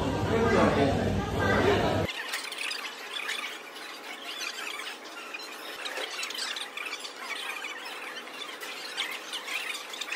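Unintelligible, high-pitched voices in conversation, thin and without any bass. About two seconds in, the sound cuts abruptly from a fuller mix to this thin, squeaky chatter.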